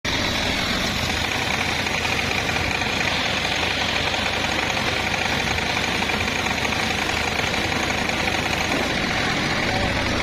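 Large sawbench circular saw blade ripping a dry jackfruit-wood plank lengthwise, a continuous steady cutting noise under load with no pauses.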